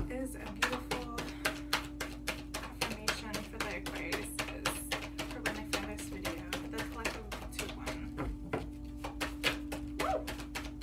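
A deck of affirmation cards being shuffled by hand, overhand, making quick clicks about five a second over a steady low hum.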